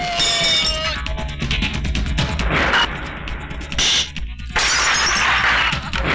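Action-film background score with a heavy pulsing bass, cut through by sudden crash and smash sound effects of a fight, the sharpest about four seconds in.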